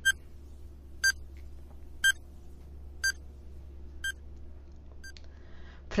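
Countdown timer sound effect: six short, high electronic beeps, one a second, the last two fainter, over a faint low hum.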